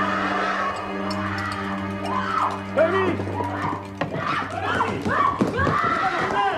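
Film score holding a steady low note. From about two seconds in, several voices cry out over it, overlapping and growing busier toward the end.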